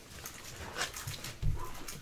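Faint crinkling of a trading card and a clear plastic card sleeve being handled, with a short low voice-like sound about one and a half seconds in.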